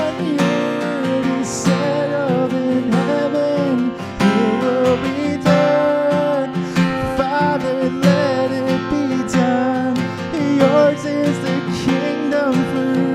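A man singing a slow worship song, accompanied by his own steadily strummed acoustic guitar.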